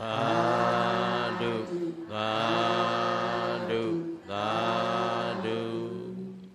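Buddhist devotional chanting by male voice: three long, drawn-out phrases held on a low steady pitch, each closing with a short turn in pitch.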